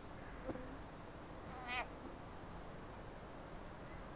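Faint outdoor ambience with a thin steady high whine, a soft tap about half a second in, and one short high animal chirp a little under two seconds in.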